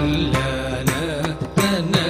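Carnatic music in Kalyani raga: an ornamented melody line gliding and wavering over a steady drone, with a few percussion strokes.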